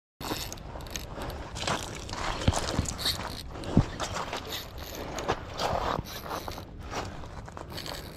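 Daiwa saltwater spinning reel being cranked close to the microphone, with irregular crunching and scraping clicks from the reel and handling.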